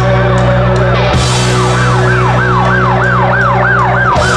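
Live rock band playing: a sustained low bass chord under a repeating siren-like tone that rises and falls, twice near the start, then about four times a second from about two seconds in.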